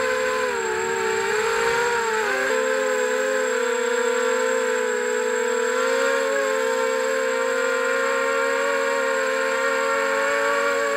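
FPV quadcopter's electric motors whining through the onboard camera's microphone, the pitch wavering up and down as the throttle changes, with a sudden dip about two and a half seconds in.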